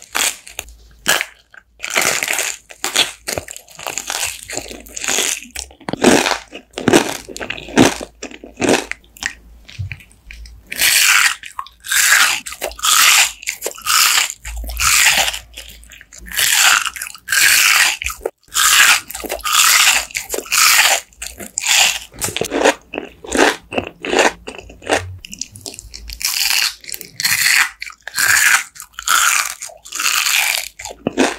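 Close-miked biting and chewing of crunchy sweets, a rapid run of crunches with short pauses; it opens with bites of cotton candy on a stick under a hard, glassy sugar glaze.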